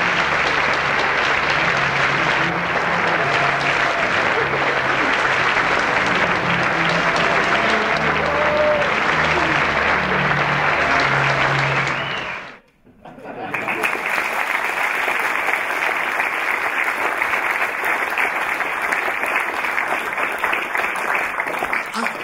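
A theatre audience applauding at a curtain call, with music underneath. The applause cuts off suddenly about twelve and a half seconds in, and after a brief gap a second round of applause follows, without the music.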